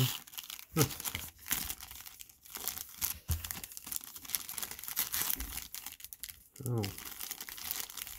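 Foil-lined baseball card pack wrappers crinkling and rustling continuously as they are handled and the opened packs are shuffled in the hand.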